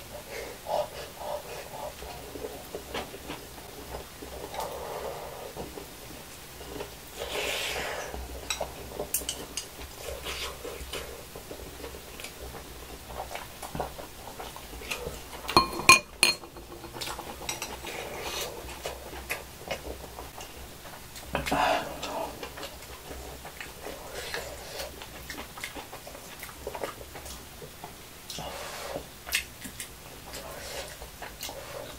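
Close-miked eating: a metal spoon and chopsticks clicking and scraping against a glass bowl and dishes, with chewing in between. The loudest sound is a sharp, ringing clink of utensil on dish about halfway through.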